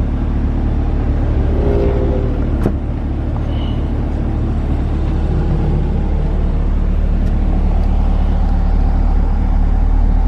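C8 Corvette Stingray's mid-mounted 6.2-litre V8 idling steadily in park, a deep even rumble, with a single sharp click about two and a half seconds in. The rumble grows a little stronger in the second half.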